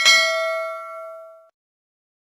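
A single bright bell-ding sound effect, rung as the notification bell icon is clicked. It rings with several overtones and fades, then cuts off about a second and a half in.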